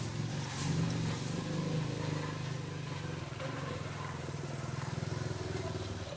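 A motor running steadily: a low, even engine hum over outdoor background noise.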